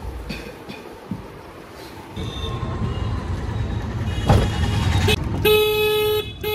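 Street traffic heard from inside a moving autorickshaw: a steady low rumble from about two seconds in, a knock about four seconds in, and a vehicle horn honking one long steady note near the end.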